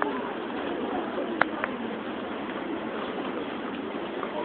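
Outdoor ambience of distant, indistinct voices over a steady background hiss, with one sharp click about one and a half seconds in.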